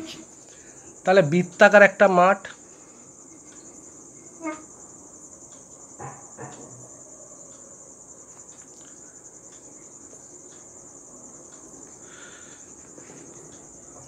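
Crickets trilling steadily in the background in a high, unbroken band, with a short spoken phrase about a second in.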